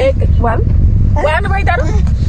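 People talking inside a moving car over the car's steady low road-and-engine rumble heard in the cabin.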